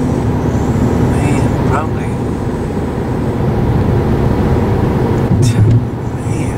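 Steady road and engine noise heard inside the cabin of a moving car, with a brief louder moment near the end.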